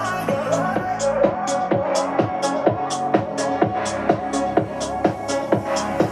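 Electronic dance music with a steady kick drum, about two beats a second, played at full volume through a JBL Xtreme 3 Bluetooth speaker. At maximum volume the bass is what the reviewer hears dropping off on this speaker.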